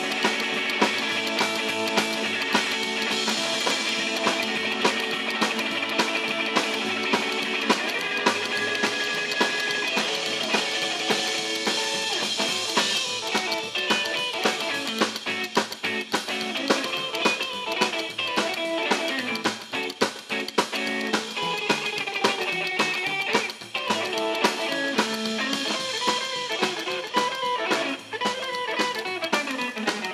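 Live rockabilly band playing an instrumental passage without vocals: a hollow-body electric guitar leads over upright double bass and drum kit, with a few brief stops in the second half.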